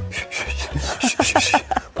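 A man making a rapid string of short hissing "shik-shik" mouth sounds, several a second, imitating fast boxing punches cutting the air, over background music with a low beat.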